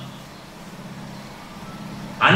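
A short pause in the speech, leaving a steady low hum and faint hiss of room background.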